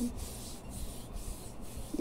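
Hand rubbing a gritty baking-soda-and-cream scrub over the skin of the forearm close to the microphone: a continuous scratchy rubbing hiss.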